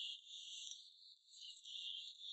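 Near silence: only a faint, steady high-pitched hiss of background noise.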